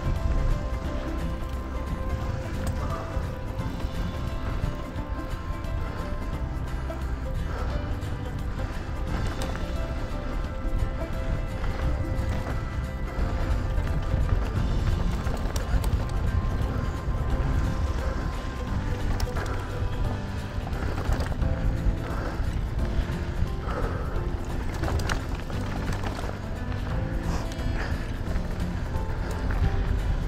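Mountain bike rolling fast down a loose dirt trail: steady tyre and chassis rumble with wind buffeting the helmet camera, under faint background music with held notes.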